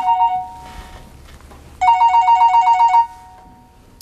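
Mobile phone ringing with a rapid two-tone trilling ringtone: one ring ends just after the start, and a second ring of a little over a second starts about two seconds in.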